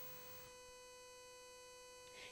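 Near silence with a faint, steady electrical hum at one pitch with fainter overtones.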